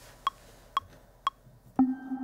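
Ableton Live's metronome counting in for a recording, with short pitched clicks about two a second. Near the end a chord on the Arturia Pigments software synth, played from the keyboard, comes in and sustains.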